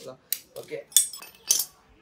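Metal hand tools clinking together as they are put down and picked up from the floor: three sharp clinks.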